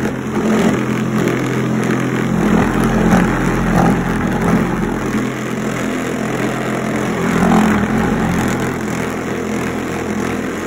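Homemade electric pool ball polisher running with a steady motor hum. A full set of pool balls rolls and clatters around the carpet-lined bowl, its spinning and oscillating motion driving them.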